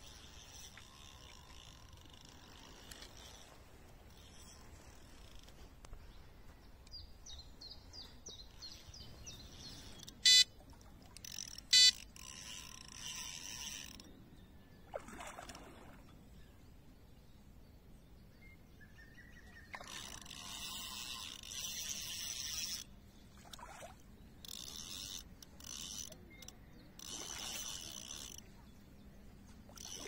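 Carp reel's clutch giving line in several short runs of ticking as a hooked carp pulls against the rod. About ten seconds in, two short, loud electronic beeps sound about a second and a half apart.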